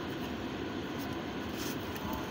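Steady low rumble of car cabin noise, with a few faint brief rustles from a cardboard pie box being handled.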